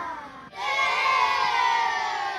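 Several people shrieking and yelling together in long yells that fall in pitch. The voices dip about half a second in, then a second, louder yell takes over.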